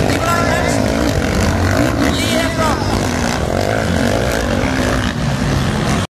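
Motocross bikes running and revving on the track, their engine noise continuous and steady in level, with a person's voice talking over it.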